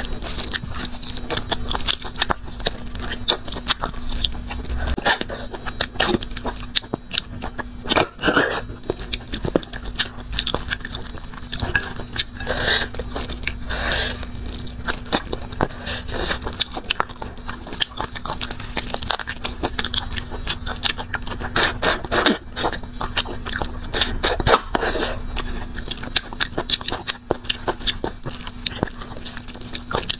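A person gnawing and chewing on braised beef bone sections and their marrow: a dense, irregular run of clicks, smacks and crunches, over a faint steady hum.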